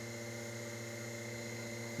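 Steady low electrical hum, like mains hum, with a faint high-pitched tone above it.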